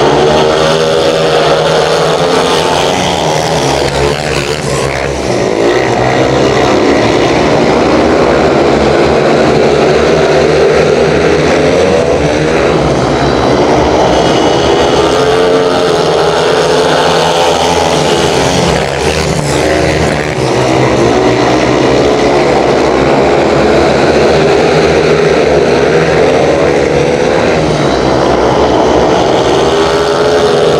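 Speedway motorcycles' 500cc single-cylinder methanol engines running hard in a race, their loud note rising and falling in long waves as the bikes go round the track. The sound dips briefly twice.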